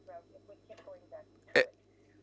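Faint speech in the background, then a single short, loud vocal sound from a person about one and a half seconds in.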